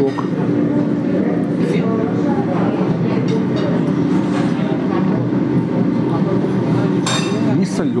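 Steady low rumble of café background noise with indistinct voices, and a fork clinking against a plate. A brief rush of noise comes near the end.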